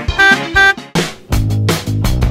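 Two short, loud beeping tones in quick succession, then a brief pause and the start of a guitar-led background music track about a second in.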